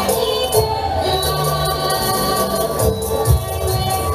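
Live Javanese traditional dance music: ringing metallic tones held over low hand-drum strokes and jingling percussion, with voices singing.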